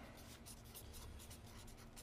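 Felt-tip marker writing letters on paper, a faint run of short scratchy strokes.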